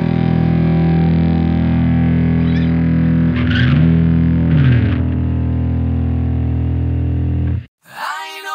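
End of a rock song: a distorted electric guitar chord held and ringing through effects. Its pitch dips and returns twice in the middle, and it cuts off abruptly near the end.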